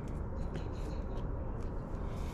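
Steady low outdoor background rumble with a few faint clicks from a plastic hand fluid extractor pump being handled.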